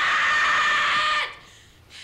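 A young woman's high-pitched scream, held at a steady pitch for just over a second and then cut off sharply.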